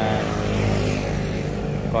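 An engine running with a steady low hum.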